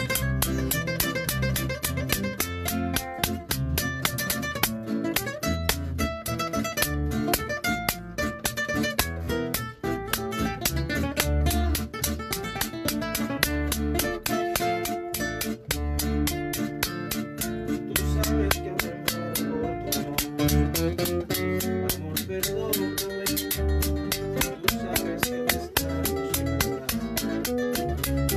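Several acoustic guitars playing an instrumental passage of a son: a picked melody over rhythm guitar and low bass notes that pulse at a regular beat.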